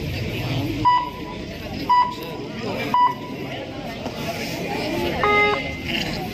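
Three short electronic beeps about a second apart, followed a couple of seconds later by a longer, lower electronic tone, over steady crowd chatter.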